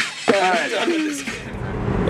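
A voice calls out briefly in a room, then a car's steady low cabin rumble takes over from a second or so in.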